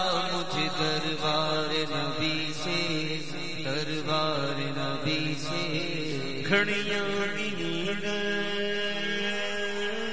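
Devotional naat singing by voice: long melismatic notes that waver at first, over a steady drone. A new set of held notes comes in about six and a half seconds in.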